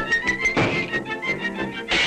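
Orchestral cartoon score from 1931 playing brisk notes, with a sudden thump sound effect about half a second in and another noisy hit near the end.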